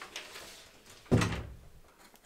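A single heavy thud about a second in, with a short ring-out.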